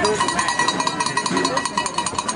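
A bell rung rapidly and steadily, its ringing tone struck several times a second, over faint voices.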